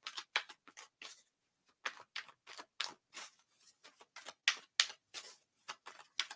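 A deck of tarot cards being shuffled by hand: a quick, irregular run of soft card flicks and clicks.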